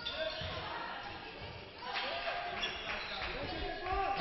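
Basketball bouncing on a hardwood court as a player dribbles, a series of thuds, with players' shouts echoing in a large hall.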